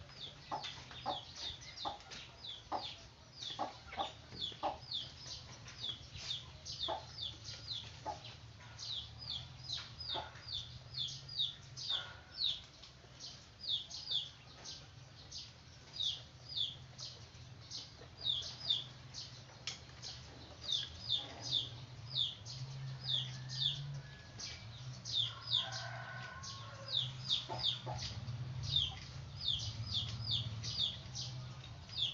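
Small animals peeping: short, high-pitched, falling chirps repeated about one to two a second, over a low steady hum. Soft clicks and rustles come and go in the first dozen seconds.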